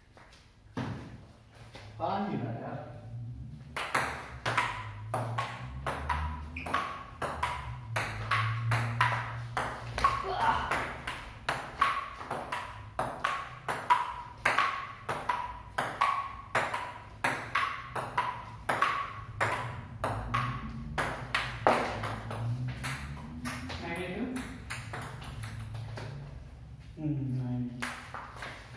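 A table tennis rally: the ball clicks back and forth between rubber paddles and a wooden tabletop, about two or three hits a second, each table bounce with a short ringing ping. The rally starts a few seconds in, runs for about seventeen seconds and ends about three quarters of the way through.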